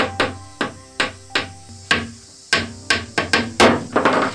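Repeated hammer blows, about fifteen sharp strikes at an uneven pace that quickens and grows loudest near the end, over soft sustained background music.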